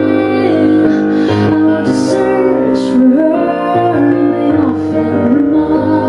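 A woman singing live into a microphone while accompanying herself on a keyboard. She holds long notes with slides in pitch over sustained keyboard chords.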